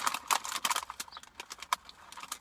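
A foil snack bag crinkling as it is handled, giving irregular sharp crackles and clicks.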